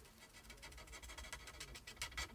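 Faint scratching of a marker nib rubbed over card in short colouring strokes.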